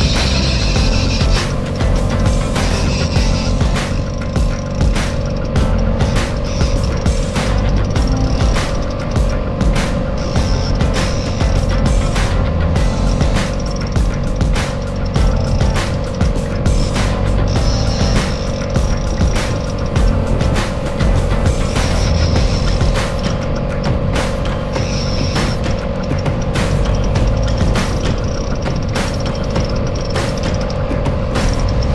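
Background music with a heavy, steady beat.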